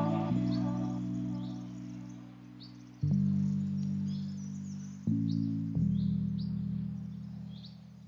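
Background music: sustained low chords that change every two to three seconds and fade between changes, with short high bird chirps scattered throughout.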